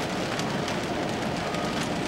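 Steady hissing background noise with faint scattered ticks, no voice.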